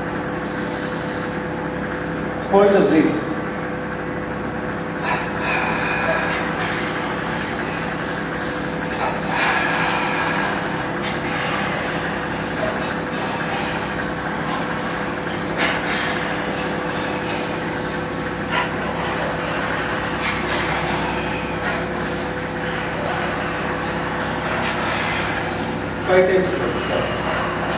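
Steady hum and whir of electric fans in a large hall, with a few faint short rustles and one spoken word about three seconds in.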